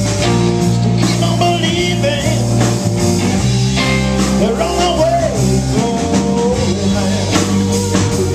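A live blues-rock band playing: electric guitars over bass and drums. A melodic line bends and wavers in pitch partway through.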